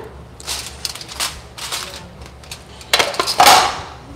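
Kitchen clatter at a countertop: utensils and dishes clinking and scraping in a few short bursts, the loudest about three seconds in.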